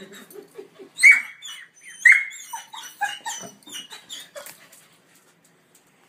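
A small dog giving high-pitched yelps: two loud ones about a second apart, then a string of quieter, shorter ones that die away by about five seconds in.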